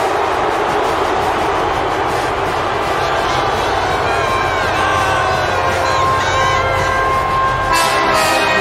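Large stadium crowd screaming and cheering loudly, with high whoops rising out of the roar. A steady held tone joins about halfway through.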